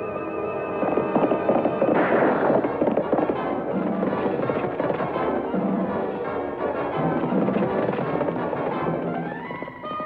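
Dramatic orchestral chase score with galloping hoofbeats and sharp gunshots through it, the loudest bang about two seconds in.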